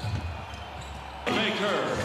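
Basketball game sound on a TV broadcast: low court ambience at first, then a man's voice comes in over it a little over halfway through.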